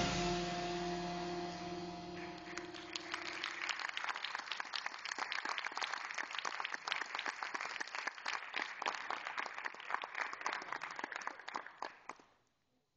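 A percussion ensemble's final notes ring out and die away over the first few seconds. An audience then applauds, with dense clapping from about two and a half seconds in that fades right at the end.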